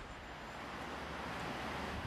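Steady rushing wind noise, growing slightly louder, with a faint low hum underneath.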